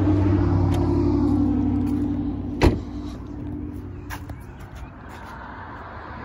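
A steady low vehicle hum, like an engine idling, then a single loud thump about two and a half seconds in, like a car door being shut. After a smaller click the hum fades away.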